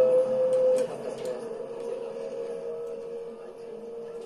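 Experimental sound collage built from field recordings, with a steady held tone and a few faint clicks; it is louder for the first second, then drops.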